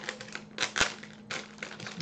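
Plastic blind bag crinkling and crackling as it is worked open by hand, in a run of irregular sharp crackles with one sharper snap a little under a second in.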